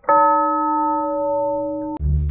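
A single bell-like chime, an edited-in sound effect, struck once and ringing on with a slow fade before it is cut off abruptly.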